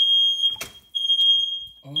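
Household smoke alarm sounding: a single high, piercing tone in long beeps just under a second each, set off by smoke from crayon wax overheating in a saucepan. A light knock about half a second in.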